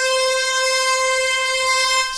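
A sample played in Native Instruments Kontakt an octave above its root (C3), pitched up through the Time Machine 2 time-stretching mode so that it keeps its original length. It sounds as one steady, bright held note with many overtones.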